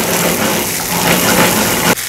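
Chopped onion, fresh ají amarillo and garlic sizzling in hot oil in a skillet, a loud steady hiss as ají mirasol paste is stirred in with a wooden spoon.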